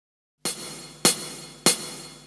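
A percussion count-in: three sharp, evenly spaced clicks a little over half a second apart, starting about half a second in and marking the beat before a backing track begins.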